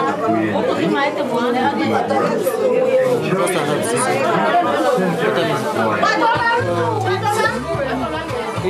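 Many people talking at once: overlapping chatter of a room full of guests.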